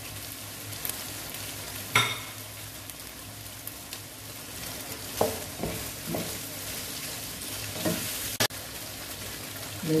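Shrimp, sausage and vegetables sizzling in a wok while a wooden spatula stirs them through. A sharp knock comes about two seconds in, with a few lighter knocks of the spatula against the pan later on.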